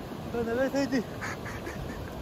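A person's voice: one short exclamation with a wavering pitch, about half a second in, over the steady rush of river water and wind on the microphone.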